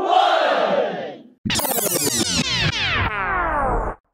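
A crowd shouts "one" to close a countdown. After a brief gap it is followed by a synthesizer sound effect of steeply falling pitch sweeps that restart several times and cut off suddenly near the end.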